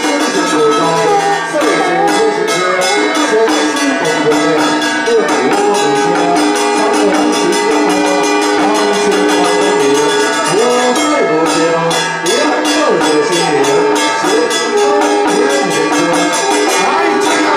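Temple ritual music: a melody of long held, bending notes over continuous jingling, clashing percussion.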